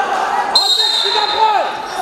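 Wrestling referee's whistle blown once, a single steady shrill blast lasting about a second, starting the bout, over the chatter of spectators.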